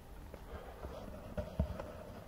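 Footsteps of a person walking on a park path: a few dull, low thuds over a faint steady background hum.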